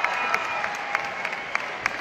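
Concert audience clapping in a large hall, with loud claps standing out at a steady beat of about three a second.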